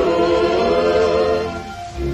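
Vintage film score with a choir singing held, wavering notes, dying away near the end.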